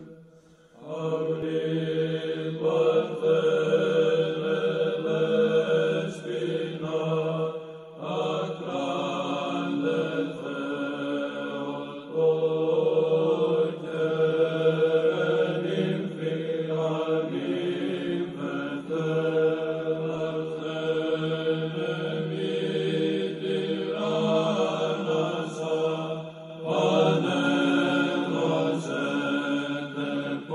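Orthodox church chant: slow sung phrases over a steady held drone note. The phrases run a few seconds each, with short breaks between them.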